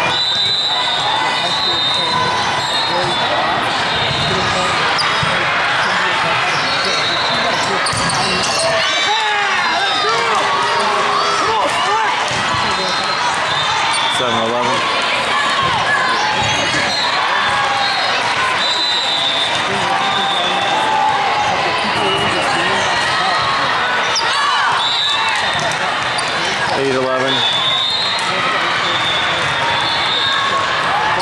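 Steady din of a crowded, echoing sports hall: many overlapping voices, with volleyballs being hit and bouncing on the court floors.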